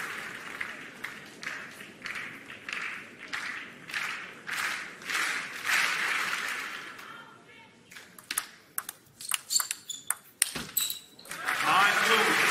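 Table tennis in an arena. For the first seven seconds the crowd claps in a steady rhythm. Then comes a rally: the ball clicks sharply off rackets and table in a quick, uneven run. Near the end a loud burst of crowd cheering and voices follows.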